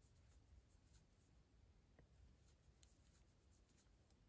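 Near silence: faint rubbing of yarn drawn over a crochet hook, with a couple of tiny ticks a little under a second apart.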